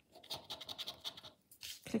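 Poker chip scratching the scratch-off coating from a paper scratchcard, a quick run of short rubbing strokes with a brief pause about a second and a half in.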